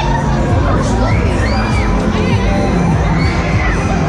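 Riders screaming on a swinging pendulum thrill ride, several cries rising and falling in pitch, over loud fairground music.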